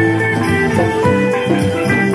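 Steel pan playing a melody of quick, ringing notes, with a drum kit keeping time behind it in a live band.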